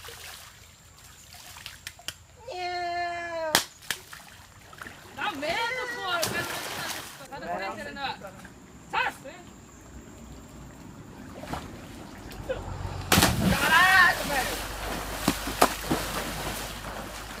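Young people's shouted voices over river water splashing around a swimmer, with one long held yell about two and a half seconds in that ends in a sharp knock.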